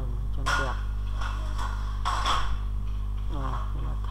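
A person's voice in short wordless stretches over a steady low electrical hum.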